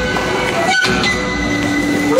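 Live folk band playing loudly: Jew's harp, violins and drums, with long held notes and a brief drop-out just under a second in.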